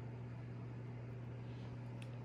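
Room tone: a steady low hum with faint hiss, and no distinct handling sounds.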